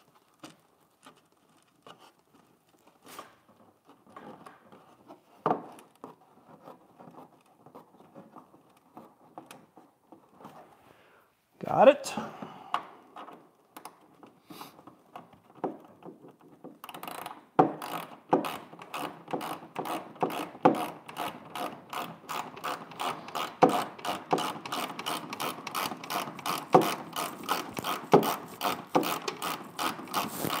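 Hand ratchet wrench clicking as a fastener is turned out, in a steady, even run of several clicks a second from about halfway through. Before that, scattered clicks and handling noises, with one louder clatter.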